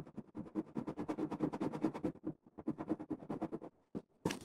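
Wax crayon coloring on paper: rapid back-and-forth strokes at about ten a second, with a short pause a little past halfway, stopping shortly before the end.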